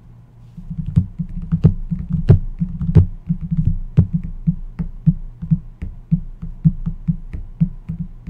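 Fingers tapping on a padded table mat in quick, irregular taps, several a second, over a faint low hum.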